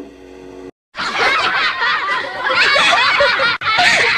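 A held musical chord ends less than a second in, and after a short gap a dense stretch of snickering laughter from several overlapping voices takes over, breaking off for an instant about three and a half seconds in.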